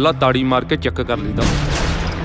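Trailer soundtrack: a man's voice over a steady deep musical bass, then about a second and a half in a sudden loud burst of noise, a gunshot-style sound effect.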